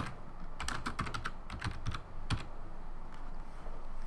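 Typing on a computer keyboard: a quick run of about ten keystrokes over roughly two seconds, starting about half a second in.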